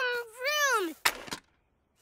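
Cartoon characters' voices calling out without words, ending in a long falling glide in pitch. About a second in comes a brief burst of noise, a sound effect such as a crash or whoosh.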